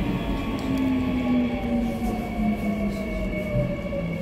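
Seoul Metro Line 3 subway train heard from inside the car, running with a low rail rumble and an electric motor whine that falls steadily in pitch as the train slows for Daechi station.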